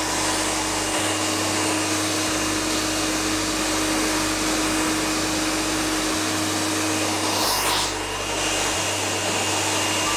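Handheld hair dryer blowing steadily on hair, with a steady motor hum under the rush of air. The hum drops out and the sound dips briefly a little before eight seconds in.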